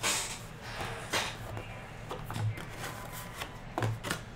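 Small cardboard trading-card hobby boxes being handled, slid and set down on a table: a scattering of light knocks and rubs, about one every second.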